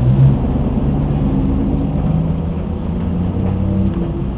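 A motor vehicle's engine running close by, a steady low rumble that swells briefly just after the start.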